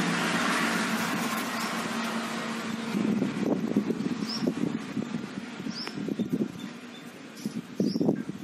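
Black puppy lapping milk from a steel bowl in quick, irregular laps, plainest from about three seconds in. Before that, a steady rushing noise with a low hum is loudest and fades away. A short high chirp sounds every second or two.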